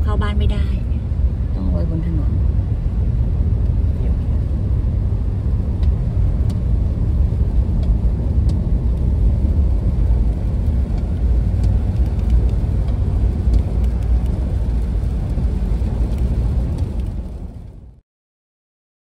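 Steady low rumble of a car driving on a wet road, heard from inside the cabin. It fades out near the end.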